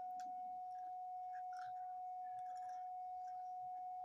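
A steady high-pitched hum on one unchanging tone, with a few faint clicks and taps from pieces of a baked clay saucer being handled.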